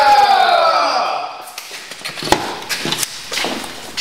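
A man's drawn-out 'ohh' exclamation, falling in pitch over about a second, followed by a few sharp light taps.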